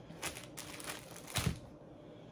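Paper towel rustling and crinkling as hands unwrap it from a plastic-wrapped oatmeal pie, in a few short crinkles, the loudest about one and a half seconds in.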